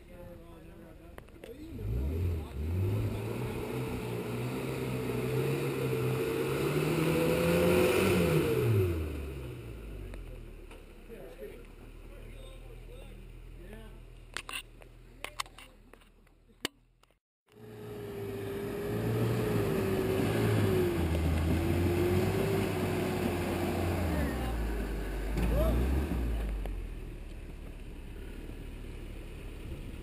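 Off-road pickup truck engine working under load as it crawls up rocks, revving up and easing off in two long pushes, pitch climbing for several seconds and then falling each time. A brief dropout sits between the two pushes.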